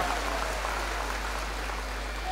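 Audience applauding steadily, with a steady low hum underneath.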